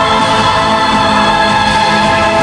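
A girl's solo voice singing a pop ballad over a backing track with choir-like backing vocals, holding long notes.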